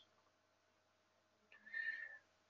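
Near silence, then a brief, faint high-pitched sound starting about one and a half seconds in.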